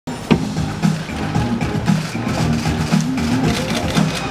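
Instrumental opening of a K-pop song's backing track: a steady beat over a repeating bass line, with no vocals yet. A sharp knock comes just after the start.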